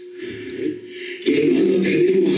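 A man preaching in Spanish into a handheld microphone over the church PA. His voice pauses briefly, then comes back loud about a second and a half in.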